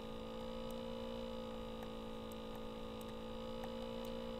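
Steady electrical hum in the recording, several fixed tones at once with no change in pitch, and a few faint ticks.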